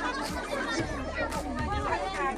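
Several people talking at once: overlapping chatter of a gathered crowd.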